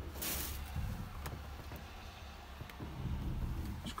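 A brief rustle near the start, then a few faint clicks, from test leads and wiring being handled at a dangling CB radio, over a steady low hum in the cab.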